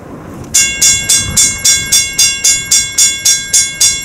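Railroad grade-crossing bell starting about half a second in and ringing rapidly and steadily, about four strikes a second, each strike leaving a lingering metallic ring: the crossing warning triggered by an approaching train.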